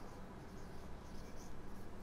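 Marker pen writing on a whiteboard, a few faint strokes.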